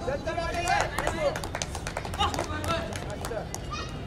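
Short shouted calls from several voices during a kho-kho chase, loudest in the first two seconds, with many sharp claps or slaps scattered among them.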